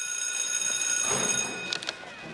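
A steady high ringing tone with several overtones, fading out about one and a half seconds in, followed by a few short clicks near the end.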